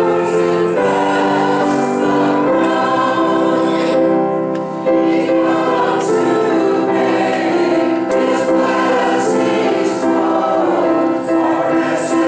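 Church congregation singing a hymn together, many voices holding long notes, with a brief pause between lines about four and a half seconds in.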